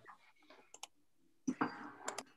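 Computer clicks picked up faintly by a video-call microphone: two quick sharp clicks, then a louder clattering knock about one and a half seconds in, followed by two more clicks.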